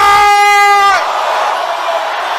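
One voice holds a long shouted note for about the first second, then a congregation praying aloud all at once, a loud jumble of many voices.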